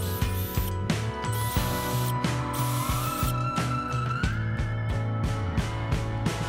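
Milwaukee brushless cordless drill driver backing screws out of a kegerator's metal door-hinge bracket, its motor running in short stretches, over background music.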